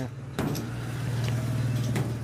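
A steady low machine hum that starts with a click about half a second in.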